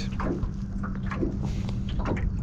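Water lapping lightly against the hull of a small boat at anchor, with faint irregular ticks and knocks, over a steady low hum.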